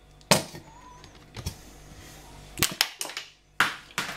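Mayonnaise being squeezed from a plastic squeeze bottle: a few sharp clicks and splutters from the bottle and nozzle, spread through the moment. The loudest pops near the end, as the bottle's cap comes off.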